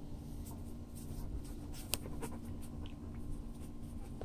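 A dog panting softly, with scattered faint clicks and one sharper tick about two seconds in, over a steady low hum.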